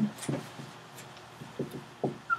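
Dry-erase marker writing on a whiteboard: a few short, faint strokes as a word is written.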